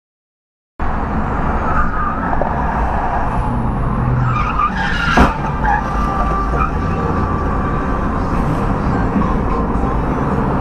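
Motorcycle riding at freeway speed: a steady rumble of engine, tyres and wind on the microphone that starts suddenly a little under a second in, with one sharp crack about five seconds in, the loudest moment.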